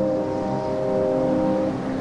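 Sustained synthesizer chord from a film score, a steady drone of held notes; one of the notes drops out near the end.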